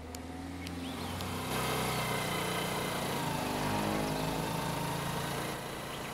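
A motor vehicle's engine running as it passes along the road, swelling about a second and a half in and easing off near the end.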